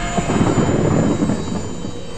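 A deep rumbling whoosh sound effect, like a jet passing, slowly dying away.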